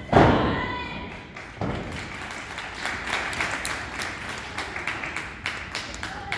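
A wrestler's body landing on the pro-wrestling ring canvas from a dive: a loud thud that rings on through the ring, then a second, lighter thud about a second and a half later.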